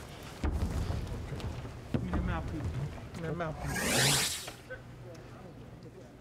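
Indistinct voices in a boxer's corner between rounds, with a short, loud rushing whoosh about four seconds in.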